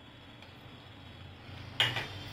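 Onions and green chillies frying quietly in oil in a non-stick kadai with ginger-garlic paste just added, then one sharp clink near the end as a spatula strikes the pan.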